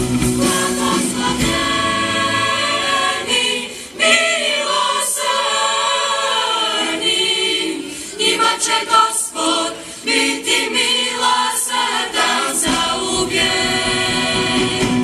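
Mixed choir of young men and women singing a hymn, with short breaks between phrases.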